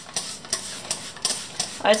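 Trigger spray bottle of air-filter cleaner squirting onto a cotton-gauze K&N air filter: several short hissing sprays in quick succession.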